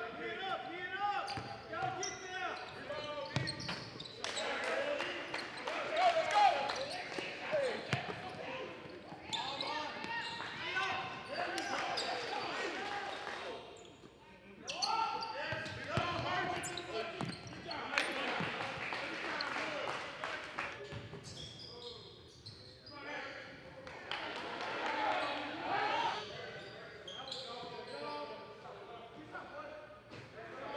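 Live basketball game sound: a ball dribbling and bouncing on a hardwood court, with short impacts, amid the voices of players and spectators.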